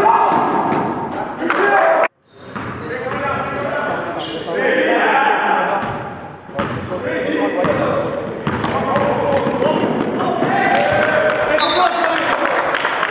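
Live sound of an indoor basketball game in a gymnasium: a basketball bouncing on the hardwood court and players' voices calling out, with the room's echo. The sound breaks off abruptly about two seconds in and dips again past the six-second mark where the footage cuts between plays.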